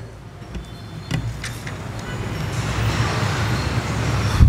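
A low rumble that grows steadily louder, with a few faint clicks in the first second and a half.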